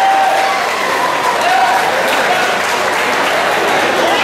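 Crowd applauding steadily, with voices calling out over the clapping.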